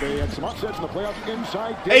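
Television basketball broadcast audio: a commentator talking over the game sound, with the ball bouncing on the hardwood court.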